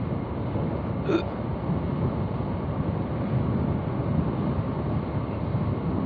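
Motorcycle riding at steady cruising speed: a continuous rumble of engine, road and wind noise on the rider's camera microphone, with a brief short blip about a second in.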